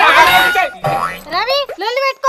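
Several people shouting over one another during a scuffle. After a brief dip, one voice cries out with a pitch that slides up and down.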